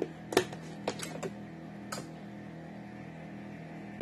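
A few short, sharp clicks and taps in the first two seconds as a spice container is handled while seasoning, over a low steady hum.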